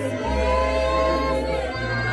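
A group of voices singing a church hymn in long held notes, over a low steady bass note that steps to a new pitch about once a second.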